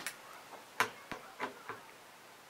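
Small sharp clicks and taps of a screwdriver being handled and set against a screw in the panning rig's metal frame, about five or six in all, the loudest a little under a second in.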